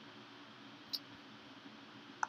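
A single computer mouse click about a second in, over quiet room tone with a faint steady hum.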